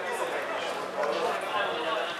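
Indistinct calls and shouts from voices around an outdoor football pitch, with no clear words, over steady open-air background noise.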